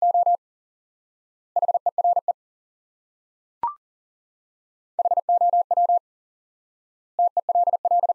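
Morse code sent at 40 words per minute as a single-pitch beep tone, in four quick bursts of dots and dashes. The first two bursts repeat the pair "two here". A short rising courtesy beep follows about three and a half seconds in, and then the next pair, "how tell", is sent.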